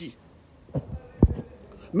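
Two low thumps on the phone's microphone during a pause in speech, a soft one just before the one-second mark and a sharper, louder one a moment later: the phone being handled or knocked while filming.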